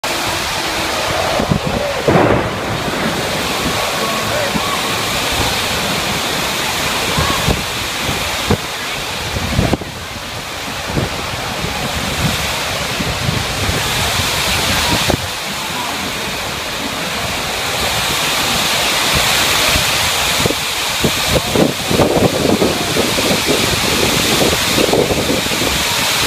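Thunderstorm: heavy rain pouring down steadily, with thunder breaking in a few times, loudest about two seconds and ten seconds in.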